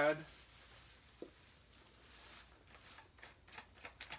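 Faint rustling and a few light clicks and knocks from things being moved about under a bench, thickening toward the end, with one short squeak-like blip about a second in.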